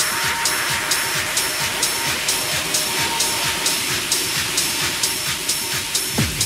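Techno in a breakdown with no kick drum: hi-hat ticks about twice a second over a held synth tone and a hissing noise wash that fades away.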